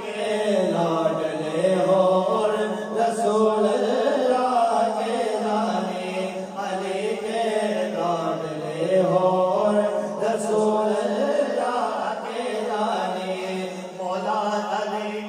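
Male voices chanting a salam, a devotional naat, without instruments, through microphones: slow, melodic lines held long and bending in pitch.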